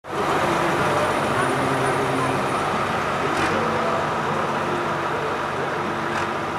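Diesel tractor engines idling steadily, mixed with the talk of a crowd of men.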